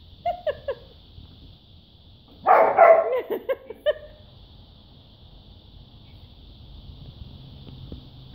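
A dog barking and yipping excitedly at a toy held up out of reach: three short yips about half a second in, then a louder run of barks and whines from about two and a half to four seconds in.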